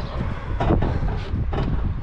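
Wind buffeting the microphone, a low rumble, with a few brief knocks of handling as the camera is swung round.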